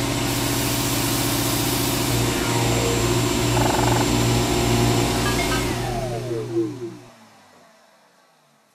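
A motor-driven machine running steadily with a strong hum, then winding down in pitch and stopping about seven seconds in, with a short loud knock just before it dies away.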